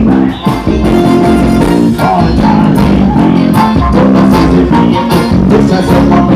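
Loud live band music over a PA system, with a heavy bass line and a steady beat.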